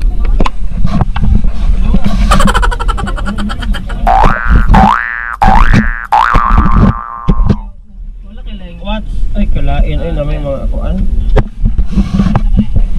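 Outrigger boat's engine running as a steady low rumble under wind and water noise on an action-camera microphone, with voices of people on the deck. About four seconds in, three quick rising glides in pitch ring out, each lasting under a second.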